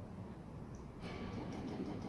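Low, steady background rumble. A woman speaks one soft word about a second and a half in.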